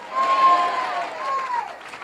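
Church congregation calling out in response, quieter than the preaching, with one long, drawn-out high voice that falls away near the end.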